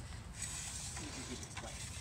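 Faint light clicks and taps from an aluminium ladder being handled and set up, over a steady low outdoor rumble.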